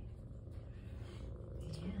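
Tabby kitten purring: a low, steady rumble.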